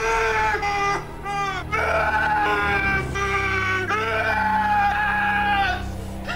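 High-pitched human yelling or jeering in about four long, drawn-out calls with wavering pitch, over a low steady drone in the film's soundtrack.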